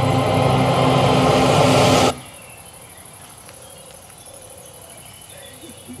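Film soundtrack over the screening's speakers: a loud, steady, droning noise with a low hum that cuts off abruptly about two seconds in, leaving a quiet background with faint crickets.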